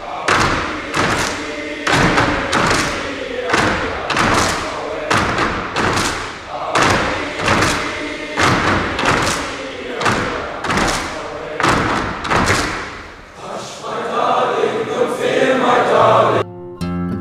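A large group of boys chanting in unison, punctuated by loud rhythmic group thuds, roughly one to two a second, in an echoing hall. In the last couple of seconds the thuds stop and the voices move into a steadier sung sound.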